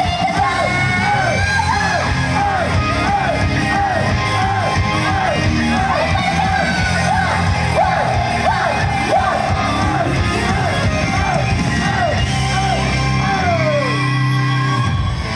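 Upbeat J-pop idol song played loud over a stage PA, with a female voice singing and audience members yelling along in time with the beat.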